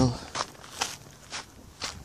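Footsteps on gravelly sand, four steps about half a second apart.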